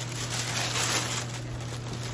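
Tissue paper rustling and crinkling as hands pull it aside, louder for about the first second, then softer.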